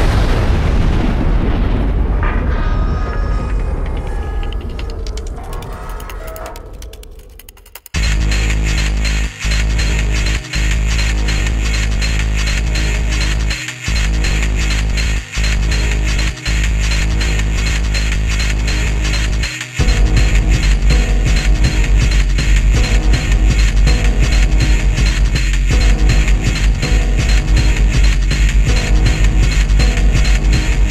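Experimental electronic trance music. An explosion-like boom effect fades away over the first several seconds. At about eight seconds a fast, dense electronic track with heavy bass cuts in, drops out briefly a few times, and comes back fuller and louder about twenty seconds in.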